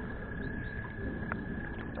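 Quiet, steady background of flowing creek water with a faint constant high whine, and a single faint click about a second and a quarter in.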